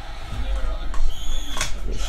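Trading cards and a card pack being handled by hand: a sharp click about one and a half seconds in and a thin, brief squeak, over a steady low hum.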